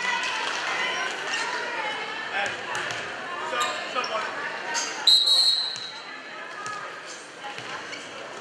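Gym crowd and players' chatter with scattered ball bounces on the hardwood floor; about five seconds in, a referee's whistle gives one short, high blast, the signal to serve.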